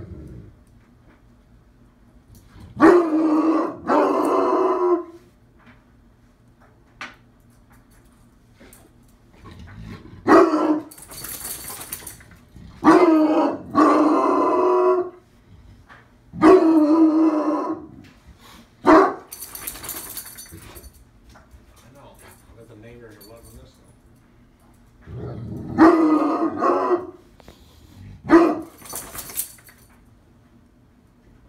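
Young bloodhound barking in deep, drawn-out barks, about nine of them in clusters with pauses between. This is a protective, aggressive reaction to a stranger in the house.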